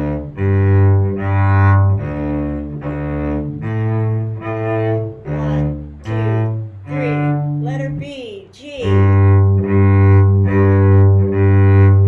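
Cello playing a bass line of separate low bowed notes that follow the D, G and A chords of the tune. About seven seconds in the run breaks for a moment into sliding, wavering pitches before the bowed notes resume.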